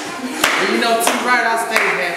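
Hand claps, three sharp ones in two seconds, over men's voices singing and calling out.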